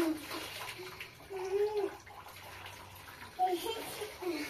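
Water poured from a plastic jug over a small child standing in a metal washbasin, splashing into the basin, then hands washing the child. A high voice calls out briefly twice.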